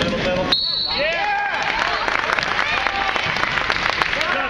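One short blast of a referee's whistle about half a second in, then basketball bounces and sneaker squeaks on a gym's hardwood floor, with voices from players and spectators.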